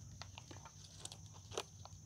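Faint handling noise: a few small scattered clicks and rustles as hands push aside the leaves of a potted apricot seedling and put a tape measure round its trunk.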